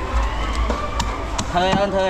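A knife scraping scales off a fish on a wooden chopping block, with several sharp knocks of the blade against the board. A voice speaks over the market din near the end.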